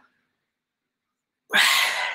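A man sneezes once: a sudden loud burst about one and a half seconds in, after a silent pause.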